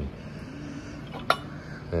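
One sharp, light metallic clink about a second in, of a steel connecting rod knocking against the others as it is picked up, over a low background.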